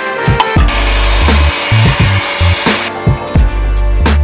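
Background music with a steady beat, over which a cordless handheld vacuum runs for about two seconds in the middle, a steady hiss that starts and stops abruptly.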